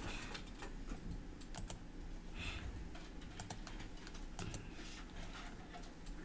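Faint, irregular clicking of computer keys and buttons, a few clicks at a time, over a steady low hum.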